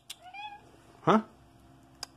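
A domestic cat gives one short meow about a quarter of a second in.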